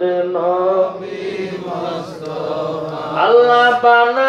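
A man chanting a devotional song in long, wavering held notes. The voice softens after about a second and swells again with a rising note near the end.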